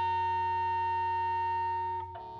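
A live rock band's sustained amplified drone: several steady held tones ring on unchanged and slowly fade.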